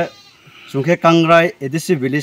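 A man speaking, with a brief pause before he carries on about a second in.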